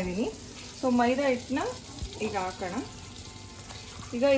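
Butter sizzling softly in a steel pan on a gas stove, a low steady hiss under a woman's voice, which is the loudest sound. A faint knock about halfway through.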